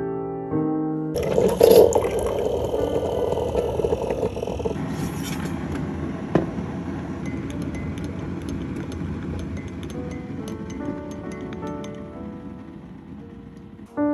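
Water running from a dispenser into a mug, loudest for its first few seconds, followed by a tea drink being stirred with light clicks against the mug. Soft piano music comes back faintly near the end.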